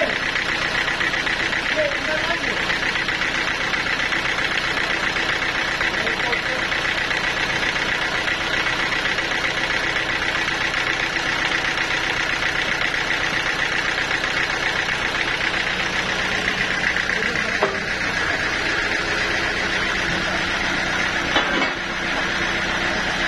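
A sawmill's engine running steadily at idle while the saw is not cutting, with a sharp knock or two near the end.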